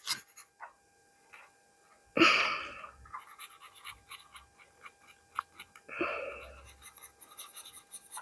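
Markers scratching on paper in many short strokes while two people color. Two short breathy sounds stand out, about two seconds in and again about six seconds in.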